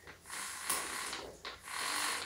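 Saw chain on an angle-grinder chainsaw-conversion bar rattling and rasping as it is pulled along the bar by hand, in two stretches. The chain is still too slack.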